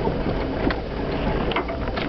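Jeep Cherokee driving over a rough trail, heard from inside the cab: a steady low engine and drivetrain rumble with scattered knocks and rattles as the body jolts over bumps.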